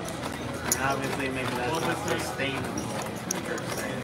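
Casino chips clicking a few times as they are handled and set down on a chip stack, under background chatter.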